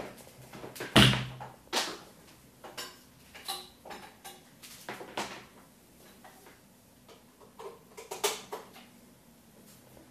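Handling clatter of an electric car polisher being plugged in and handled: a run of knocks and clicks, the loudest a sharp clunk about a second in, then smaller clicks and rustles; the motor is not running.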